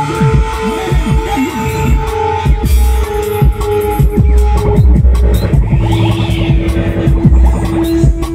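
Loud electronic music from a live set on synth controllers: deep bass under held synth tones, with fast squiggly pitch-sweeping effects and a rising-then-falling high sweep about six seconds in.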